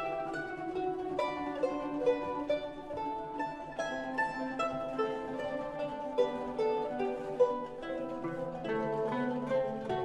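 A mandolin orchestra playing: mandolins and mandolas plucking a flowing melody of separate, quickly decaying notes over guitars and double bass.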